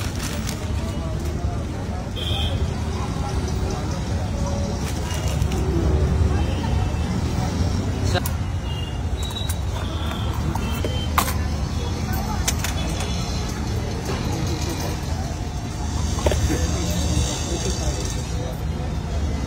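Busy roadside ambience: a steady low rumble of road traffic with indistinct background voices, and a few sharp clicks scattered through it.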